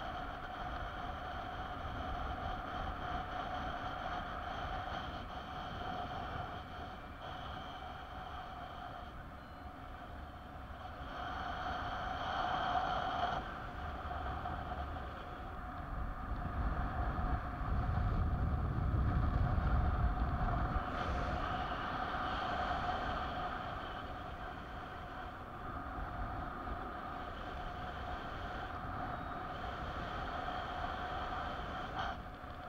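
Wind rushing over a camera microphone in paraglider flight, with a faint steady whistle underneath. About 16 to 21 seconds in, a gust buffets the microphone with a louder low rumble.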